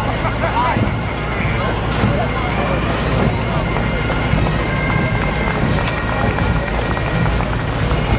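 Fire engine's diesel engine rumbling steadily as the truck rolls slowly past at close range, with voices in the crowd around it.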